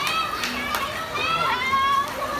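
High-pitched children's voices shouting and cheering from the poolside, long drawn-out calls overlapping one another, loudest near the end.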